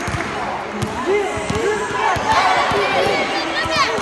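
A group of children shouting and squealing over one another in a large hall, with scattered thuds; a few high-pitched squeals near the end.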